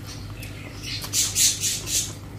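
Wet eating sounds close to the microphone: about a second in, a quick run of four or five sharp, hissy squelches from chewing and from hand-mixed rice and curry.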